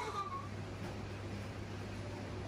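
A high, gliding cartoon child's giggle from the TV trails off in the first half-second. After that comes the steady low hum of an electric oven running, with a faint even hiss.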